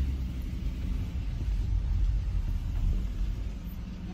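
Car engine running with a low, steady rumble, heard from inside the cabin.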